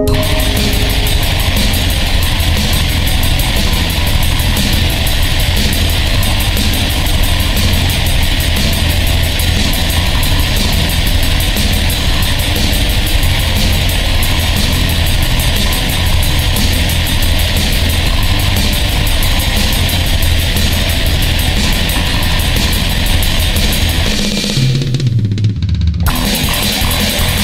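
Black/pagan metal band playing at full tilt, with distorted guitars and rapid, dense drumming, coming in abruptly after a quieter ambient passage. Near the end the band cuts out for about a second, leaving a low note sliding downward, before the full band returns.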